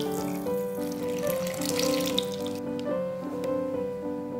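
Water poured from a cup into a stainless steel bowl of flour and eggs, splashing for about the first two and a half seconds, over steady background music.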